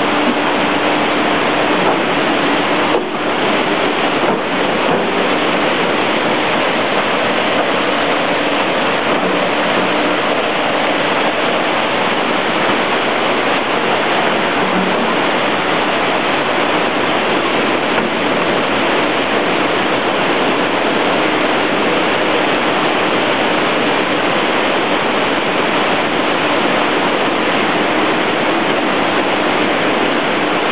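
Steady rushing of stream water after a flash flood, with a few light knocks about three to five seconds in.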